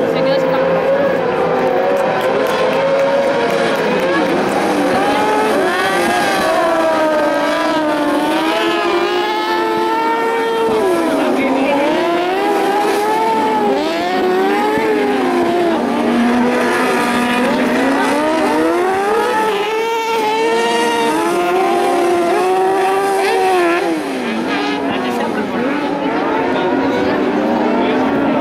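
Motorcycle-engined carcross buggies racing, their engines revving high, the pitch climbing and dropping again and again through the gears and the corners.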